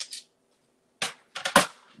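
Plastic paper trimmer being picked up and set aside on the table, clacking: a short click about a second in, then two louder knocks close together.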